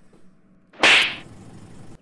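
A single sharp, whip-like crack about a second in that dies away quickly, followed by a faint hiss.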